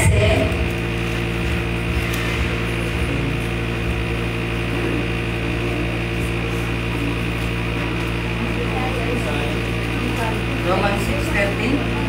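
A steady droning hum made of several constant pitches, strongest in the low range, running under the room sound. Brief bits of speech come at the very start and again from about ten and a half seconds in.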